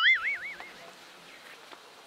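A comic sound effect: a high, whistle-like tone with a fast wavering pitch that fades out within the first second, followed by faint background hiss.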